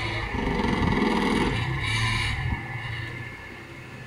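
A Toyota sedan's engine running at low speed as the car creeps through a parking manoeuvre. The low rumble fades about two and a half seconds in.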